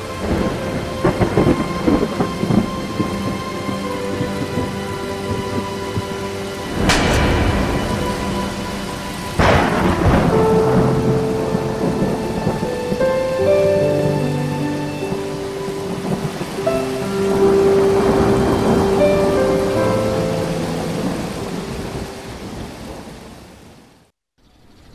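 Steady rain with two loud thunder cracks, about seven and nine and a half seconds in, each rumbling away, under a slow music score of held notes. It all fades out near the end.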